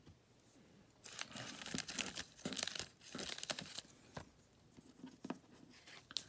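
Thin clear plastic crinkling and crackling in quick bursts for a couple of seconds as a penny sleeve for a trading card is pulled out and handled. A couple of faint crinkles follow near the end.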